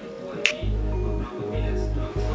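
A single finger snap about half a second in, then background music with a deep bass line comes in just after.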